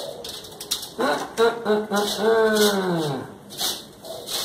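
Fingers scratching and rustling through dry wheat bran on a screen sieve while mealworms are sorted out of it. In the middle a person's voice gives a drawn-out wordless sound that falls in pitch.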